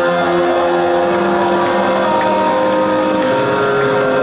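Live band with electric guitars holding sustained, ringing chords over a dense wash of sound, with light cymbal ticks, played loud.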